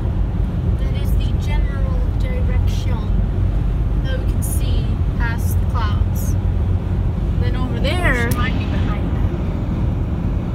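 Steady low road and engine rumble heard inside a moving car's cabin at highway speed, with voices talking quietly over it.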